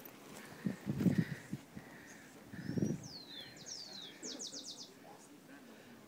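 A small bird singing about three seconds in: a couple of quick downward-sliding whistles, then a fast run of falling high notes. Two low, muffled bursts of sound, about one and three seconds in, are louder than the song.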